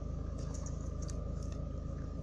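Steady low hum of a car engine idling, heard from inside the cabin, with a faint steady high tone above it.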